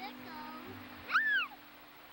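A single short high cry that rises and then falls in pitch, about a second in, over soft music with held low notes.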